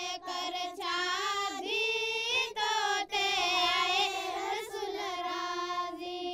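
A single high voice singing unaccompanied, holding long wavering notes in phrases broken by short pauses.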